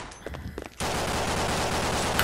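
Rapid automatic gunfire from a video game, starting suddenly just under a second in and then running on steadily as a dense rattle.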